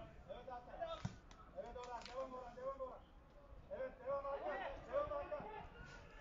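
Voices shouting and calling across an open football ground, fainter than the commentary, in three spells, with a sharp knock about a second in.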